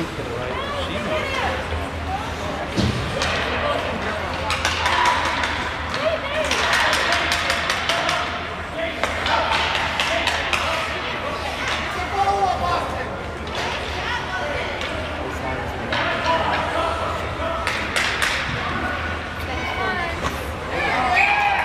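Indoor ice hockey rink during play: a steady wash of spectators' voices and calls, with sharp knocks of sticks and puck now and then.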